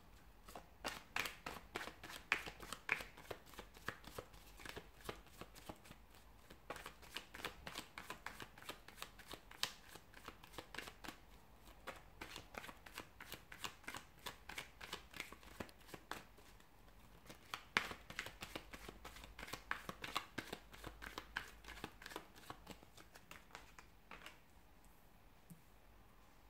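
A deck of tarot cards being shuffled by hand: a long, quick run of soft card flicks with a few short lulls, stopping about two seconds before the end.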